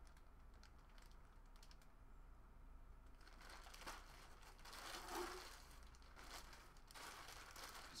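Faint crinkling and rustling of plastic packaging being handled, starting about three seconds in and loudest near the middle, over a low steady hum.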